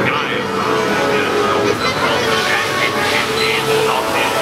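Many voices chattering at once over a steady hum.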